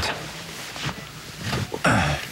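Wordless, breathy human vocal sounds, like a sigh, with a sudden sharp intake of breath near the end.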